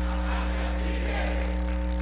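Steady electrical mains hum, a low drone with a buzz of higher overtones, at an even level throughout.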